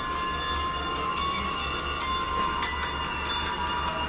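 Audio playing from a phone's speaker: sustained high tones that shift every second or so, over a steady low hum.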